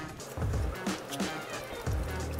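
Soft background music with low bass notes, and faint clicks over it.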